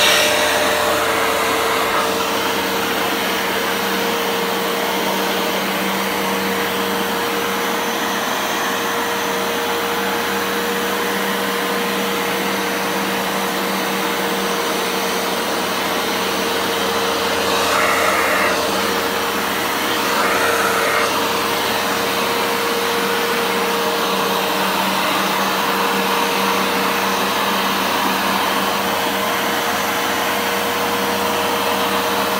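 Hoover Dual Power Max carpet washer running steadily as it is pushed over a rug, washing it: a constant motor hum with a steady tone. Two brief swells in the sound come about two thirds of the way through.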